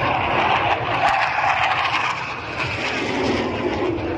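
Formation of BAE Hawk jet trainers flying past, their jet engine noise a steady rush that falls in pitch as they pass.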